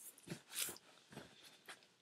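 A few faint, short mouth and handling noises as a pinch of dip tobacco is worked into the lower lip.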